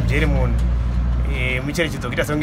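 Low, steady rumble of a motor vehicle engine under a man's voice; the rumble drops away near the end.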